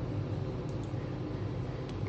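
Steady low room hum and hiss, with a few faint short clicks as the clock's hour hand is handled on the spindle.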